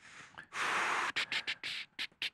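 Breathy, unvoiced laughter from a man: a long rush of breath about half a second in, then a quick string of short puffs, about six or seven a second.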